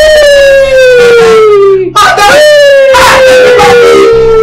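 A woman's loud, drawn-out wailing cries: two long calls, each sliding slowly down in pitch over about two seconds, the second starting about two seconds in.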